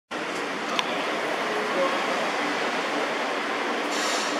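Steady ambient noise of a parking garage, a hiss and hum with faint traces of voices, starting abruptly and broken by one sharp click a little under a second in.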